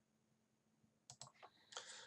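Near silence, then a quick run of faint clicks from a computer keyboard starting about a second in, as the chart on screen is switched to another stock.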